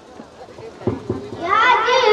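A short lull with faint crowd noise, a couple of soft thumps about a second in, then a voice begins singing a naat through the stage PA in the last half second, its melodic line rising.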